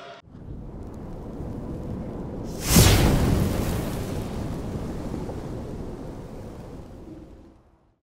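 Cinematic logo-reveal sound effect: a low rumble, a sudden loud boom about three seconds in, then a long rumble that fades away near the end.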